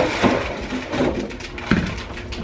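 Grocery packages being handled: packaging rustling with several short knocks and clicks, the sharpest near the end.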